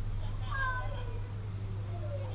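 An animal call falling in pitch, heard twice: once about half a second in and again starting near the end, over a steady low hum.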